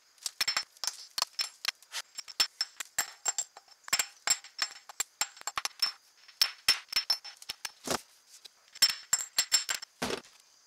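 Claw hammer tapping lightly and rapidly on a cast-iron Civil War artillery shell, chipping off rust and encrustation: an irregular string of sharp metallic clinks, a few a second, each with a thin high ring. One heavier knock comes near the end.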